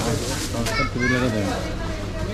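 People talking: voices throughout, with no other clear sound standing out.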